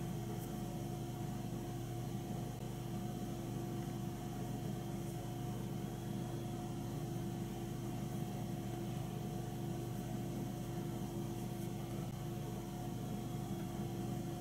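A steady hum with a faint hiss, with no distinct events: background room tone.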